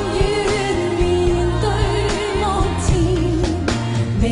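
Female voices singing a pop duet live, with band accompaniment and a steady bass line; the sung line wavers with vibrato on held notes.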